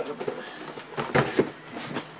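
A shrink-wrapped trading-card hobby box being handled and set down on a table: a few short knocks and rustles, loudest just past a second in.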